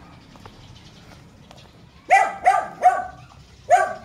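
A dog barking: three barks in quick succession about two seconds in, then one more near the end.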